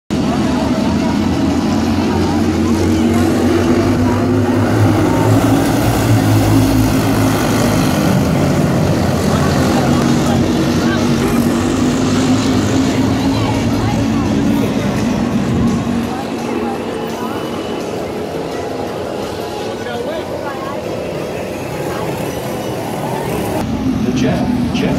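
Junior sprint car engines running hard at high revs on a dirt track, their pitch wavering as the cars go through the turns. About sixteen seconds in the sound drops away to a quieter, lighter engine note.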